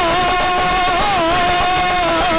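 A singer holding one long note that wavers briefly about a second in, part of live devotional stage music.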